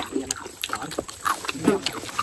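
A woman's voice in soft, short snatches, with a few light clicks between them.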